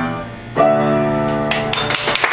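Piano playing the closing chords of a song: a chord fades out, and a final chord is struck about half a second in and left to ring. The first claps of applause come in near the end.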